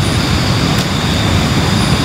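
A steady rushing noise with a deep rumble underneath, holding an even level.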